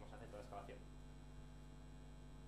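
Steady electrical mains hum in a near-silent room pause, with a faint trace of a voice briefly in the first second.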